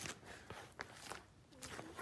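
Clear plastic sheet-protector pages in a ring binder being turned by hand: faint crinkles and light clicks, mostly in the first half-second.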